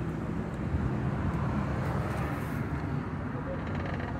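Steady low engine hum heard from inside a small car's cabin.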